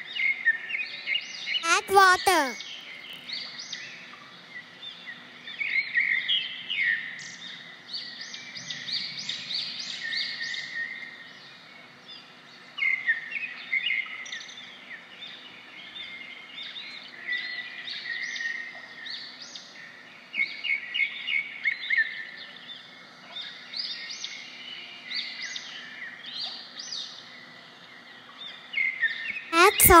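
Birds chirping and singing throughout in quick runs of short, high chirps. About two seconds in there is a louder falling, gliding sound.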